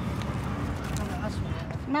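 Several people talking quietly in the background over a steady low rumble.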